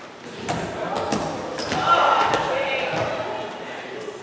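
Running footsteps in sneakers on a stage floor: several thuds in the first two seconds. A voice sounds about two seconds in.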